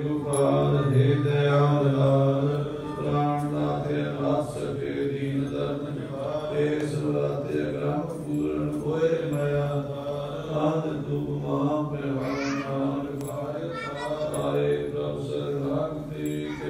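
Male voices chanting a devotional chant over a steady low drone.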